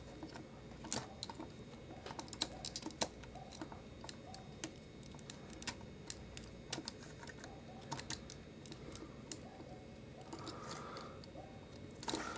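Faint, irregular clicks and taps of hard plastic as a Transformers Voyager-class Fallen action figure is handled and its arms and joints are moved into pose.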